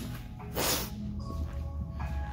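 A brief rustling scuff about half a second in as the recording phone is moved and set down, over faint steady background music.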